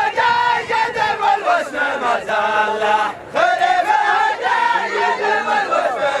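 A large group of men chanting together in loud voices, the sung line rising and falling. There is a brief break about three seconds in before the chant resumes.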